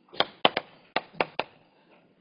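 Chalk tapping and clicking against a chalkboard while writing: about six sharp, uneven taps.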